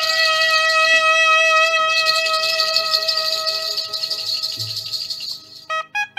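Instrumental Rajbanshi folk music: one melody instrument holds a single long note, slipping slightly down at first, over a continuous shaking rattle. Both fade about five seconds in, and short, clipped notes start just before the end.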